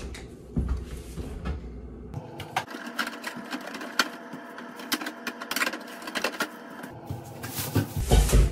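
Groceries being put away: a run of light clicks, knocks and rustles as packages are handled and set on shelves, with heavier thuds near the start and the end.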